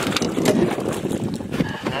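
Knocks and clatter of a landing net being handled against an aluminium boat's side, over wind noise on the microphone.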